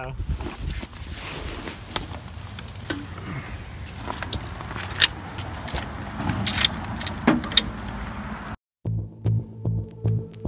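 Clicks, knocks and rustling of gear being handled at an open vehicle door, with several sharp clicks in the second half. After a sudden cut near the end, music with a slow throbbing beat of about two pulses a second begins.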